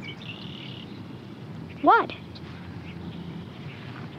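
A pause in the talk filled with faint, steady outdoor background noise and hiss, broken about two seconds in by a boy saying a single short 'what?'.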